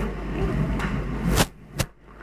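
Handling noise on a handheld microphone: rubbing and knocks over a steady low mains hum, ending in two sharp clicks about a second and a half in, a fraction of a second apart.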